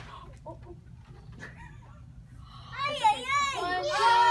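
Quiet with a few faint clicks, then, from near the end, a high-pitched voice wailing, its pitch wavering up and down before settling into a long falling note.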